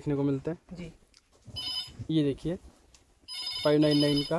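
An electronic ringing tone, likely a phone, sounding twice: a short ring about one and a half seconds in and a longer one near the end, with voices talking around it.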